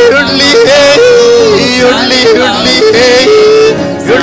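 Male voice singing a melody with held notes and sliding ornaments, accompanied by two strummed acoustic guitars.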